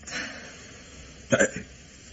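A soft breath just after the start, then one short catch of a person's voice, like a hiccup, about a second and a half in, over the steady hiss of an old radio recording.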